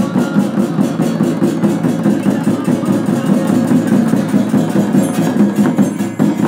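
Shamans' ritual dance music: frame drums beaten in a steady beat with jingling bells, and voices from the crowd underneath.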